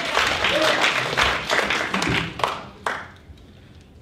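Audience applause, dense clapping that dies away about three seconds in.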